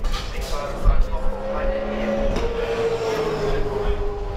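V8 Supercar racing engine running in pit lane, its pitch sliding slowly down, with voices mixed in.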